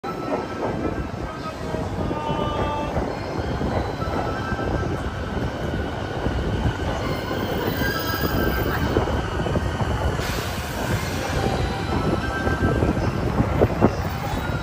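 A 285 series Sunrise Seto/Izumo sleeper train pulling into a station platform: steady wheel and running noise with thin wheel-squeal tones, and a brighter hiss joining about ten seconds in.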